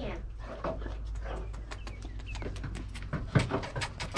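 A quick run of light knocks, a goat's hooves clattering on the shelter floor as she runs, growing louder near the end.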